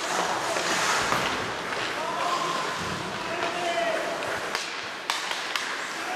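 Ice hockey being played in an echoing rink hall: a surge of noise, then voices shouting and calling out, and near the end a few sharp clacks of stick or puck.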